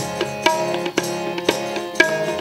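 Harmonium playing sustained melody notes over tabla accompaniment, the tabla striking a steady beat of about two strong strokes a second with lighter strokes between.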